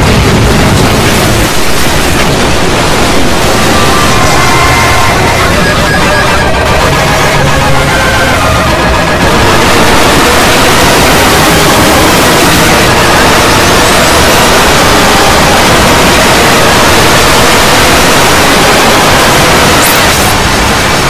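Many screamer-video soundtracks playing at once: a loud, dense wall of overlapping music and distorted noise, thickening slightly about ten seconds in.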